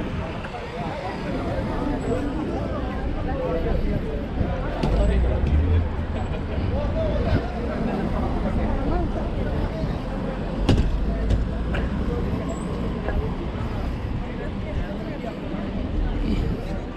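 Busy street ambience: passersby talking and road traffic, with low rumbles of passing vehicles about five seconds in and again around ten to twelve seconds, and one sharp click near the eleventh second.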